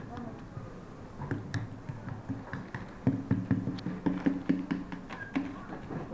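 Clear plastic toy bag being handled and opened, with scattered sharp crinkles and taps, over low voices.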